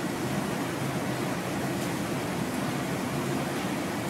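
Steady, even hiss of room tone and recording noise.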